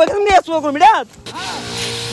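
Battery-powered knapsack sprayer running: a steady electric pump hum under the hiss of spray from the lance, starting about a second in after a few spoken words.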